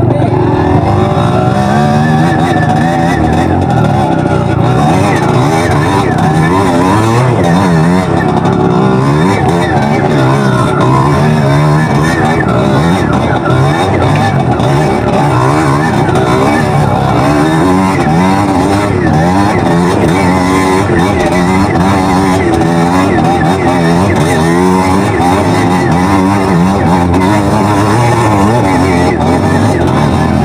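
Dirt bike engine running under load on a trail, its revs rising and falling continually with the throttle.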